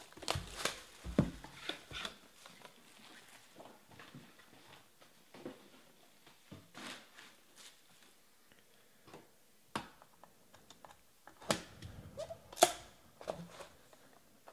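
Shrink wrap crinkling and a cardboard trading-card box being handled and opened on a table: scattered rustles, clicks and light knocks. They are loudest in the first second or so and again about 11 to 13 seconds in.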